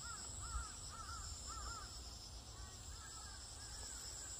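A bird calling in a quick series of short arched calls, about two a second, clear at first and fainter in the second half, over a steady high-pitched insect drone.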